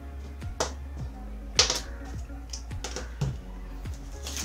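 Small camera accessories being set down and moved on a wooden tabletop: several sharp clicks and taps, the loudest about one and a half seconds in, over background music.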